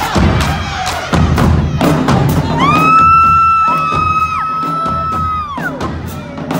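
High school drumline playing marching snare, tenor and bass drums, with sharp drum strokes. About two and a half seconds in, two long high held tones join over the drums, sliding up at the start and falling away near the end.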